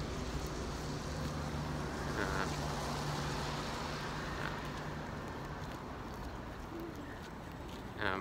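City street traffic: a steady low hum of vehicle engines over road noise, easing off a little toward the end.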